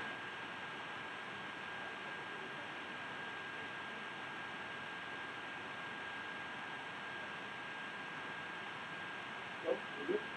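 Steady hiss of the recording's microphone noise with a thin, steady high tone running under it, and a brief soft sound near the end.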